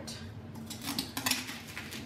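A few light knocks and scrapes as a boot-shaped container is handled on a tiled countertop and a block of floral foam is pressed into its opening; the knocks come in a quick cluster about halfway through.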